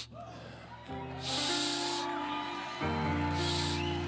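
Sustained keyboard chords held under a pause in the preaching, changing chord about a second in and again near three seconds. Two brief hissing sounds rise over them.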